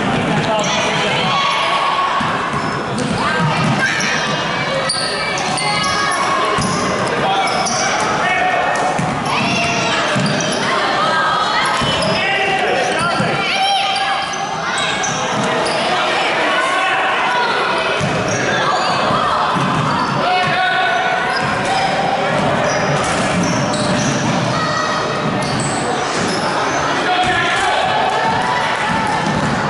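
A basketball being dribbled on a hardwood gym floor during a youth game, with many voices talking and calling out over it in a large gymnasium.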